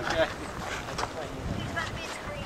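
Wind rumbling on the microphone, with a spoken "okay" and a short laugh at the start and faint talk near the end.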